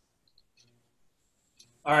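Near silence with a few faint clicks, then a man's voice begins near the end.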